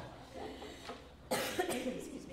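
A person coughs once, sharply, just past halfway, after a quiet stretch.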